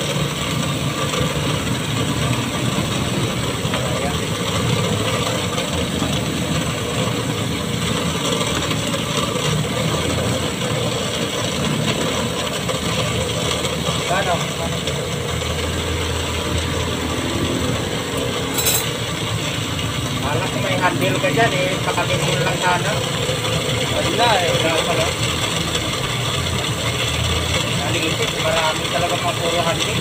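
A motor running steadily, with a low hum and no change in pace.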